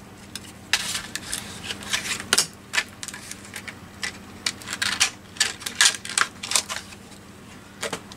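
Stiff plastic blister packaging being pried off its cardboard backing with a small tool: a run of irregular sharp clicks and crackles of flexing plastic.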